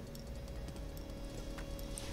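Faint steady hum with a few light, scattered clicks from a computer mouse and keyboard.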